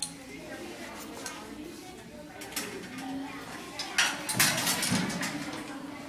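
Faint background voices, with a short burst of clattering about four to five seconds in.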